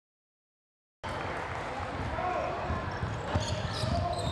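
Silence for about the first second, then the sound of a live basketball game in an arena: a ball bouncing on the hardwood court over crowd murmur and faint distant voices.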